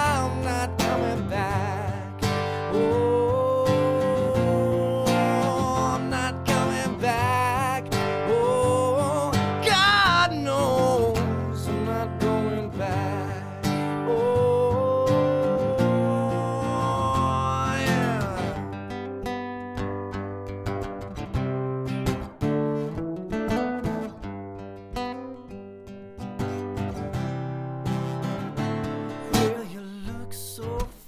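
Strummed acoustic guitar with a man singing long, wavering held notes without clear words; about two-thirds of the way through the voice stops and the guitar plays on alone, a little quieter.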